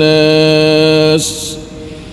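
A man's voice in Quran recitation holding one long, steady drawn-out note at the end of a verse phrase. The note stops about a second in, followed by a breath-pause of faint room noise.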